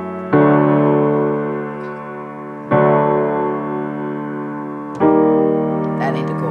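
Piano chords played slowly: three chords struck about two and a half seconds apart, each held and left to fade.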